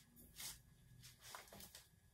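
Near silence with a few faint, brief rustles, the clearest about half a second in, as a paper bag of granular biochar and a metal scoop are handled and the bag is set on a digital scale.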